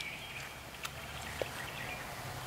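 Quiet outdoor ambience with faint bird chirps over a low steady hum, and one light click a little under a second in.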